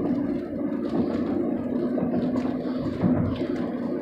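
Steady in-car road noise of a car driving along: a low engine and tyre hum heard from inside the cabin.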